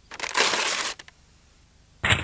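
Paper crinkling in one short burst of under a second.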